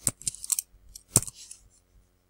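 A few sharp clicks of a computer mouse close to the microphone: one at the start, one about half a second in and the loudest just after a second, each with a short hiss.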